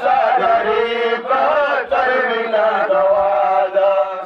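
A male voice chanting a Pashto noha, a Muharram lament for Husain, in long drawn-out melodic phrases with short breaks between them.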